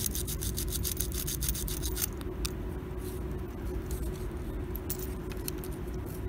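A thin abrasive strip rubbed quickly back and forth across the copper contacts of an electrical toggle switch, several strokes a second, cleaning the contacts. The strokes stop after about two seconds and only a few scattered ones follow, over a steady low hum.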